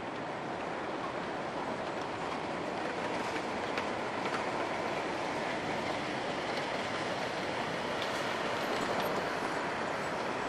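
Steady city street noise: an even rush of traffic and general outdoor din with no distinct events.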